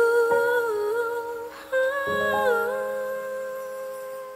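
A high voice hums a wordless melody in two phrases, the second starting about two seconds in, over held chords from a soft instrumental accompaniment, gradually getting quieter: the closing bars of a slow ballad.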